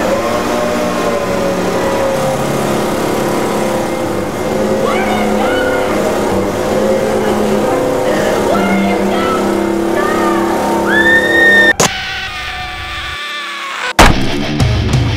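Ryobi leaf blower engine running steadily, with a woman's screams rising over it, the loudest about eleven seconds in, cut off abruptly just before the end.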